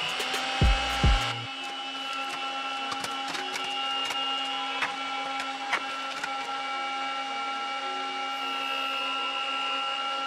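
Small handheld battery fan running with a steady, high-pitched motor whine that climbs to full speed right at the start. Two low thumps come about a second in.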